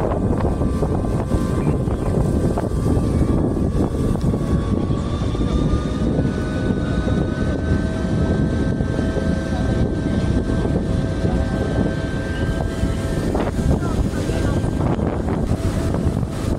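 A passenger riverboat's engine running steadily under way, with heavy wind buffeting the microphone and a few faint steady tones from the engine.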